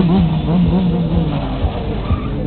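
Sport motorcycle engine running, holding steady revs for about a second and then easing off, with music playing behind it.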